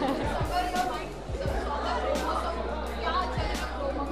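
Voices chattering over background music in a large room, with scattered sharp clicks.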